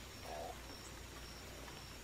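Faint background nature ambience of a night-time soundscape: a steady low hum and hiss with a high insect trill pulsing on and off, and one brief faint call about a third of a second in.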